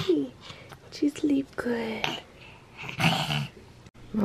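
A baby cooing in short pitched sounds, with soft, breathy voice sounds about three seconds in.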